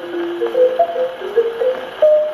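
A 1929 dance-band slow fox-trot on a 78 rpm record, played on a wind-up Columbia Vivatonal Grafonola 117-A acoustic gramophone. In this instrumental passage a melody steps through several notes over the band's chords. The sound is thin, with little deep bass or high treble.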